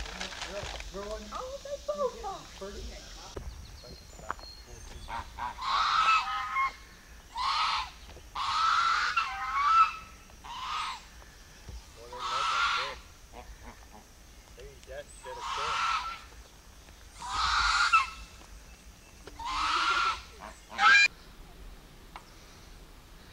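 Domestic geese honking: a run of about nine loud honks, each half a second to a second long, repeated every second or two from about five seconds in.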